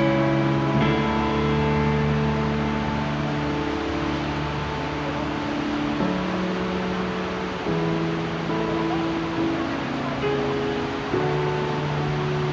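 Background music: sustained chords that change every second or two.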